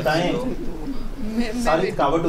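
A man's voice talking in a small room, with brief pauses; no other sound stands out.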